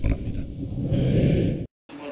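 A preacher's low, drawn-out speaking voice over a microphone, cut off abruptly near the end.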